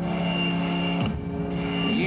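Rock band playing live, a slow passage of held, steady notes without singing; the notes change about a second in.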